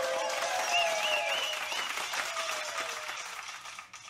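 Crowd applause and cheering with a warbling whistle, fading out near the end.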